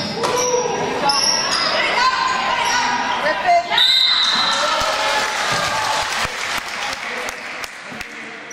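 Basketball play in a gym: sneakers squeaking on the court, shouts from players and spectators echoing in the hall, and a referee's whistle about four seconds in stopping play for a foul.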